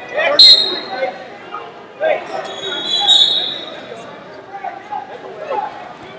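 Indistinct shouting and chatter from coaches and spectators, echoing in a large hall, with a sharp thump on the wrestling mat about half a second in.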